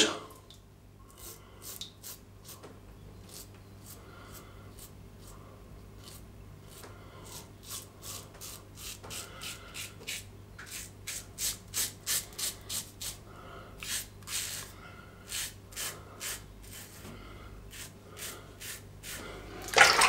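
Executive Shaving Claymore double-edge safety razor with a Feather blade scraping through lathered stubble on the first pass, in many short, crisp rasping strokes. They are sparse at first and come in quick succession from about a third of the way in.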